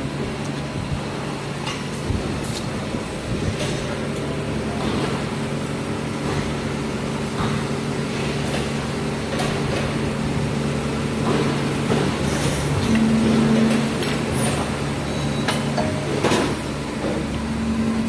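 Injection molding machine running: a steady low hum with scattered clicks and knocks. One hum tone rises briefly and gets louder about 13 seconds in, and again near the end.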